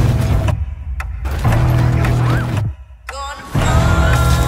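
Action film trailer soundtrack: music mixed with loud, low-heavy sound effects, broken by two short drops in level.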